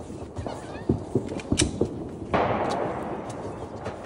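A single gunshot about two and a half seconds in, its report ringing out and fading over a second or so, after a few sharp faint pops.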